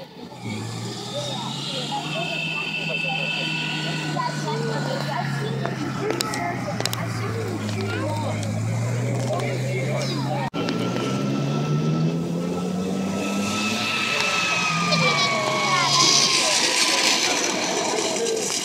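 Alvis Saracen armoured personnel carrier's Rolls-Royce straight-eight petrol engine running as it drives, its low note falling slowly, with crowd chatter over it. After a sudden cut about ten seconds in, another vehicle's engine rises in pitch.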